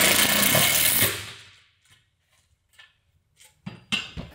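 Makita cordless impact driver driving a screw into a clothesline spreader-bar joiner. It runs for about a second and winds down, followed by a few faint clicks near the end.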